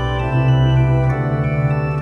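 Organ music playing slow, sustained chords.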